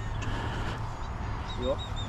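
A bird calling: a quick run of about five short, high, evenly spaced chirps starting about a second in, over a low steady rumble on the microphone.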